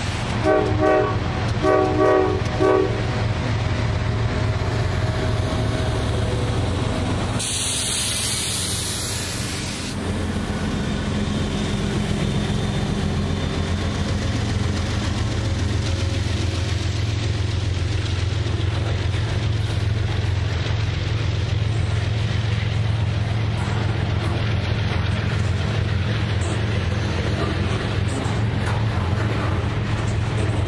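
CSX freight train's diesel locomotive sounding a multi-note horn in two short blasts near the start, then passing close by with a steady low engine drone. A loud hiss about eight seconds in, then the ongoing rumble of the passing cars on the rails.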